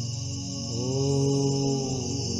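A steady musical drone, with a man's chanting voice entering about halfway through on one note that slides up and is then held, as in a mantra chant.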